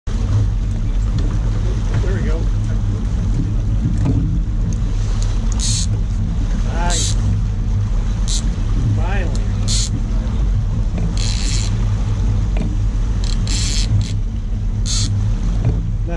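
Boat engine running steadily at low speed, a constant low hum. Short hissing bursts come every second or two over it.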